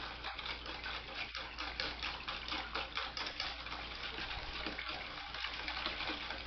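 Wire whisk stirring a thin vinegar sauce in a stainless steel bowl: steady liquid sloshing with quick, repeated ticks of the whisk wires against the metal.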